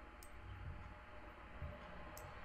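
Faint room noise with a single soft computer-mouse click about a quarter of a second in.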